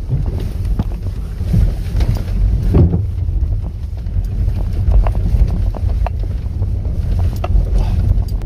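All-wheel-drive SUV driving through deep puddles and mud on a rutted dirt track, heard from inside the cabin: a loud, steady low rumble of engine and tyres in water, with scattered knocks from the suspension over the ruts.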